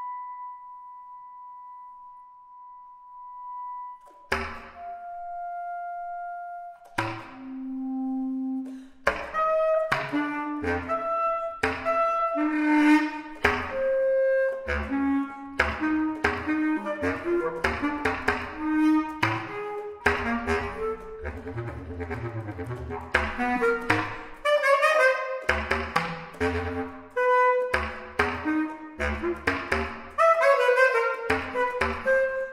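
Solo bass clarinet playing contemporary music. A soft high note is held for about four seconds, then a few separate sustained notes follow. From about nine seconds in come rapid, jagged runs of short notes that leap between the low and high registers.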